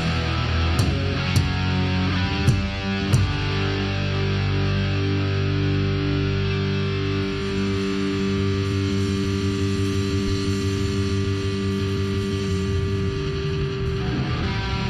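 Live heavy metal played by a band of distorted electric guitars, bass guitar and a Tama drum kit. A few drum hits and falling guitar slides come in the first three seconds, then one chord is held and left to ring for about ten seconds.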